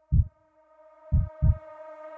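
Trailer sound-design heartbeat: pairs of deep thumps, one pair at the start and another about a second in, under a held electronic tone that fades in partway through.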